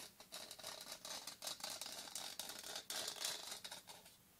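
Fingernails scratching quickly over the glitter-coated white rim of a decorative wreath, close to the microphone: a dense run of short, crisp scratching strokes that stops right at the end.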